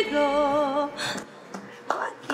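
A woman singing solo, holding a note with vibrato that stops about a second in, followed by a quieter stretch with a faint click.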